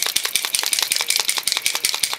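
Rapid, even clicking, about ten clicks a second: a silver leafing paint pen being shaken so its mixing ball rattles inside the barrel.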